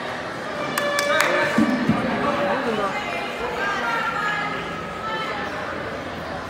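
Indistinct voices of people talking and calling out, with two sharp knocks about a second in.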